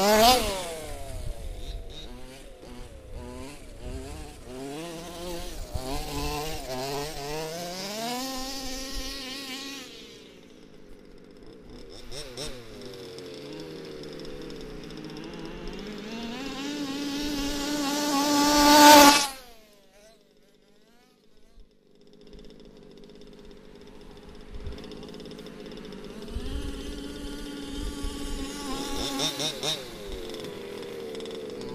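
Small two-stroke petrol engines of 1/5-scale RC cars running hard, revving up and down as the cars race around. One passes close right at the start, and a louder run, rising in pitch, cuts off suddenly about nineteen seconds in; after a short lull the engines are heard again.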